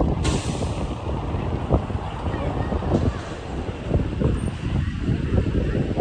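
Street traffic passing close by, with a short, sharp air-brake hiss from a heavy vehicle just after the start.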